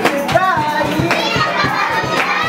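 Children's voices shouting and laughing over music with a steady beat, about two beats a second.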